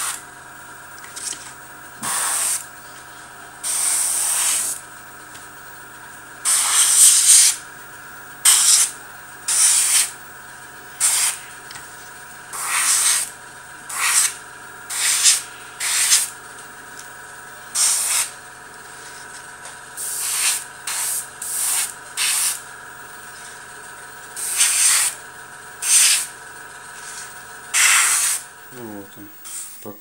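Airbrush spraying brown paint in about twenty short bursts of hiss, each under a second, as the trigger is pressed and released. Under it the airbrush compressor hums steadily, then stops just before the end.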